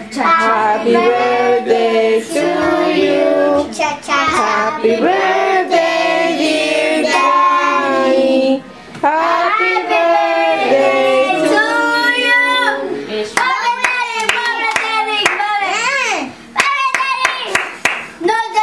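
A group of children and adults singing a birthday song together, unaccompanied, with hand-clapping joining in over the last few seconds.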